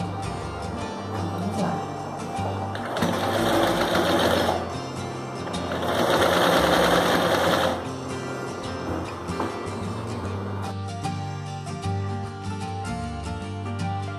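Singer Facilita Plus domestic sewing machine stitching a denim hem. It runs in two bursts of about two seconds each, a few seconds in and again around six seconds, over background music.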